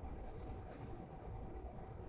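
Quiet room tone: a faint steady low rumble and soft hiss with no distinct events.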